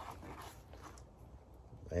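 Faint clicks and rustle of small batteries being handled and taken from a nylon pouch, over quiet outdoor background; a man's voice starts at the very end.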